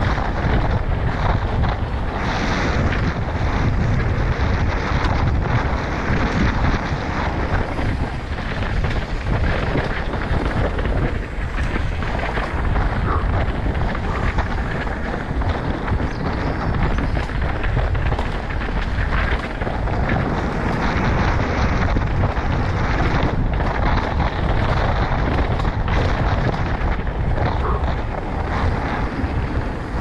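Wind rushing over the camera's microphone together with the continuous rattle, tyre noise and small knocks of an enduro mountain bike descending a dirt trail at speed.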